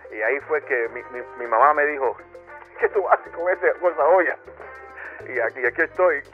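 Speech over background music with a bass line stepping between low notes.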